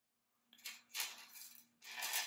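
Thin craft wire being handled: three short, faint scraping rustles starting about half a second in, as the wire runs through a metal bead and is drawn across the work mat.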